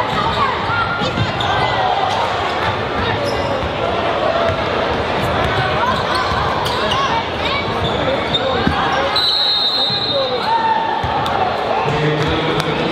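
A basketball dribbled on a hardwood gym floor, with steady spectator chatter throughout, all echoing in a large gym.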